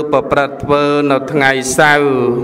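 A Buddhist monk's voice chanting in a slow, melodic intonation, holding steady notes and gliding between syllables.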